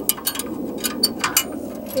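MasterRack fold-down ladder rack on a cargo van being pulled down by hand: a string of about six short metal clicks and clinks from its arms and pivots.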